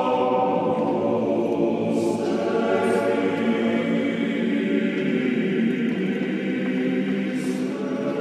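Background choral music: a choir singing slow, sustained chords, the harmony shifting about two seconds in.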